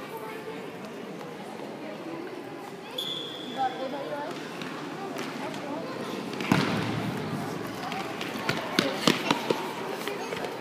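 Football being kicked and bouncing on a sports-hall floor: a sharp thud about six and a half seconds in and a quick run of knocks near the end, over the chatter of spectators in the hall. A brief high-pitched tone sounds about three seconds in.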